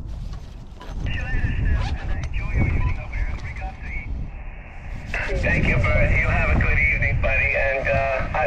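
Single-sideband voice of another ham on the 20-metre band, coming from the Icom IC-703 Plus transceiver's small external speaker. The thin, narrow-band voice starts about a second in, gives way to a moment of receiver hiss, then comes back louder. Wind rumbles on the microphone throughout.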